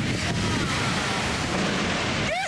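Severe thunderstorm: gusting wind and heavy driving rain hitting the microphone as one steady, loud rush.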